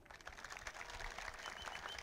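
Faint scattered clapping from an audience.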